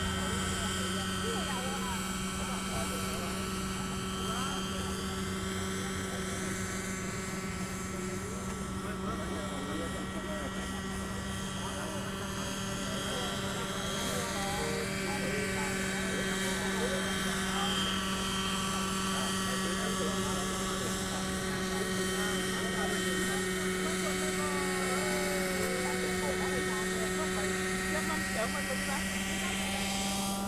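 Radio-controlled model helicopter's glow engine and main rotor running steadily: a constant, high-pitched drone made of several steady tones. Some of the upper tones rise and fall in pitch as the helicopter moves about.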